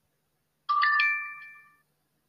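Phone pronunciation-practice app's success chime: three quick rising notes that ring on together and fade, sounding about a second in. It marks the spoken word being scored as correct ("Excellent!").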